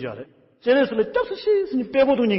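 Only speech: a man speaking Tibetan in a steady teaching monologue, with a brief pause about half a second in.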